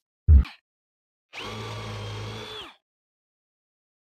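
A short thump about a third of a second in, then a cordless drill with a 3/8-inch fastener bit running steadily for just over a second, pre-drilling a screw hole in a pine board, and winding down as the trigger is released.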